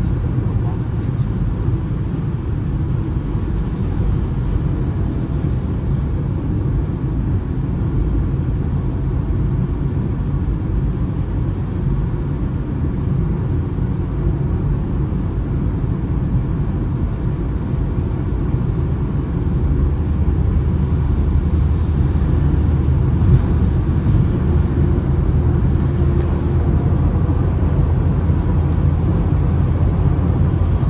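Cabin noise of a Citroën C3 with a 1.0 three-cylinder engine cruising at highway speed on a wet road: a steady engine drone under tyre and road noise. About two-thirds of the way through, the engine note grows deeper and louder as the car speeds up again.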